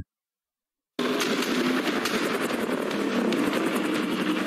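Action-film soundtrack: after a second of silence, rapid automatic gunfire cuts in over a vehicle running in a chase, a fast stream of sharp shots.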